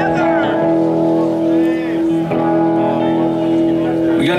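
A band instrument holds a steady sustained chord, breaking off briefly a little over two seconds in and then picking up again. Voices can be heard faintly underneath.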